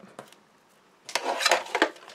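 Quiet for the first second, then a short burst of rustling and clicking knocks as a plastic paper trimmer is shifted off the craft mat and the cut white card stock is handled.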